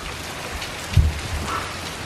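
Rain falling steadily on wet pavement and a patio, an even hiss, with one low thump about a second in.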